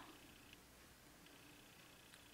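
Near silence: faint room tone with a thin, steady high-pitched hum that drops out about half a second in and comes back just past a second.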